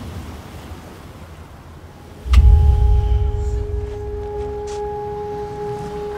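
Cinematic sound-design hit: a deep boom a little over two seconds in, leaving a steady bell-like ringing tone held over a low rumble.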